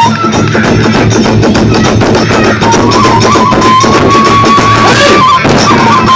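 Live kagura hayashi playing fast: drums and cymbals beat rapidly under a bamboo flute, which holds long high notes from about halfway through.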